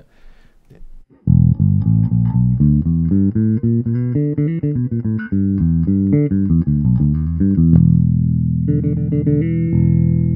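Ibanez SR500E electric bass with Bartolini BH2 pickups, fingerstyle, with both pickups blended and the active EQ set to neutral. A busy line of quick plucked notes starts about a second in, then it settles on a held low note near the end.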